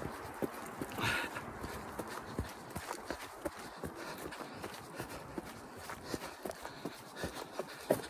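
A runner's footsteps on a muddy woodland trail as he climbs a hill: irregular soft thuds, with the rustle of clothing and the handheld phone moving.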